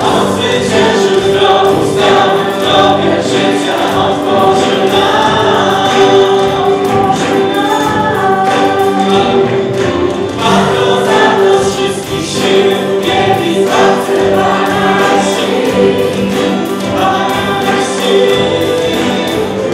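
Live worship band playing a song: several voices singing together over acoustic guitar, strings and keyboard.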